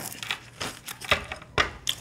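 Tarot cards being handled on a table: about five light, sharp taps and flicks, roughly half a second apart, with a duller knock about one and a half seconds in.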